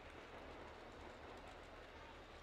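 Faint, steady rumble of a commuter train running along an elevated railway viaduct.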